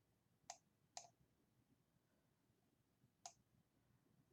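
Three short, sharp computer mouse-button clicks, two about half a second apart near the start and a third a little after three seconds in, against near-silent room tone.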